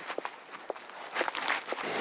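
Scattered footsteps and light knocks, irregular and fairly quiet, over faint background noise.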